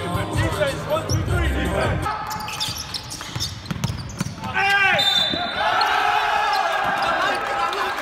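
Players' voices in a team huddle, then a basketball bouncing on a hardwood court during live play, with sharp squeaks and players shouting in a large sports hall.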